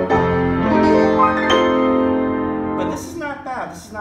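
Hallet, Davis & Co UP121S studio upright piano played: a few chords in quick succession, the last one held and ringing for over a second before it is cut off near the end.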